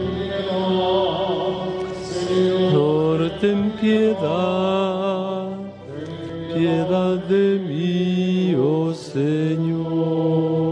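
Liturgical chant sung at Mass: a voice holds long, sliding, ornamented notes over steady sustained accompanying tones.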